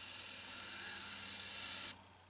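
A Pololu Zumo robot's small gearmotors and rubber tracks whirring as it spins in place under a step motor command, stopping near the end. The whir wavers slightly: the robot struggling to hold a constant angular velocity, for a reason not yet known.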